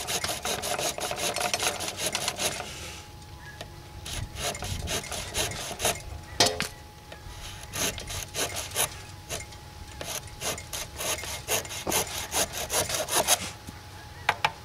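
Kershaw Taskmaster folding saw cutting through a green poplar branch in quick back-and-forth strokes. It pauses twice and stops about thirteen seconds in. The sticky green wood makes it a bit of work.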